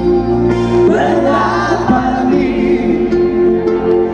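Live band music heard from the audience, with many voices singing together over held notes and a steady bass line.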